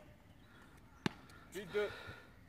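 A single sharp knock of the ball about a second in, then a man calling the score.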